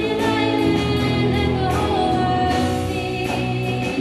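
A worship song: a small band of guitars and keyboard accompanying several voices singing together in a steady, sustained melody.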